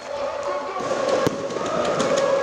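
Stadium crowd of fans chanting in unison, holding a sung note that swells after the start. A single sharp firework bang about a second in.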